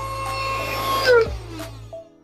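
Portable handheld vacuum's motor running with a steady whine, then switched off about a second in, its pitch falling as it spins down.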